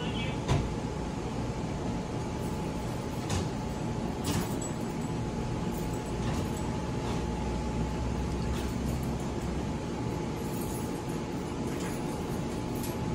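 Steady low rumble and hum of an Amtrak passenger train standing at the platform, with scattered sharp clicks and knocks, the first about half a second in.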